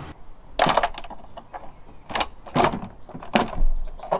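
Irregular sharp clacks and knocks of hand tools and hard engine parts as the last bolt holding a plastic rocker cover on a 2.0L Duratec engine is undone: about five separate clacks, the loudest near the end.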